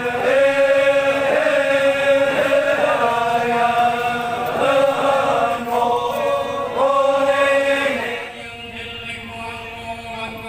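A voice chanting in long, held notes that slide from one pitch to the next, dropping away about eight seconds in.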